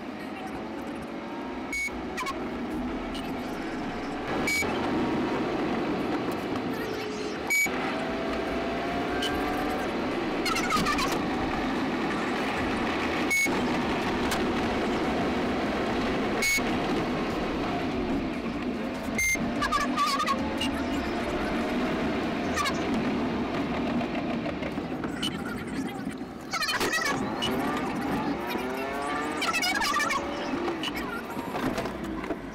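Police patrol car's siren wailing in long rising and falling sweeps, heard from inside the cruiser over its engine and road noise during a high-speed pursuit. A short high beep repeats every three seconds or so.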